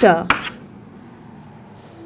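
A brief tap of chalk on a chalkboard as the last word trails off, followed by quiet room tone.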